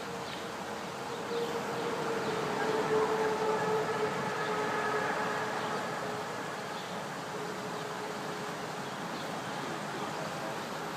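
A boat's engine running in a canal lock: a steady hum that grows a little louder in the first few seconds, then fades over the second half.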